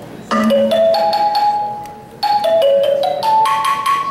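Digital accordion playing a bell-like, mallet-style melody: a quick rising phrase of ringing notes over a low note, played twice about two seconds apart, each note fading after it is struck.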